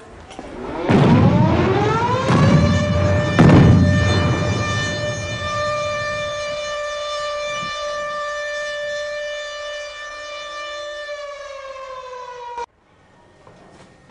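Air-raid siren winding up to a steady wail, with a deep boom about a second in and another around three and a half seconds. Near the end the wail sags slightly in pitch and cuts off abruptly.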